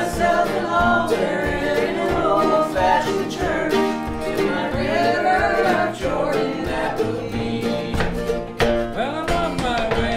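Small acoustic gospel band playing a song: mandolin and acoustic guitars strumming under several voices singing together.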